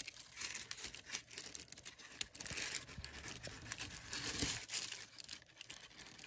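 Tissue paper crinkling and rustling with small irregular plastic clicks as a plastic action figure is handled and its helmet is pushed onto the head.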